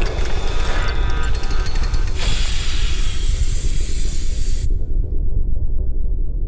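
Intro sound design over a steady low rumble. Clicks and crackles run through the first two seconds, then a loud hiss starts about two seconds in and cuts off suddenly a couple of seconds later, leaving the rumble.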